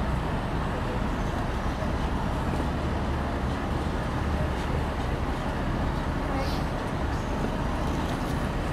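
Steady low rumble of an idling SUV engine close by, with road traffic noise.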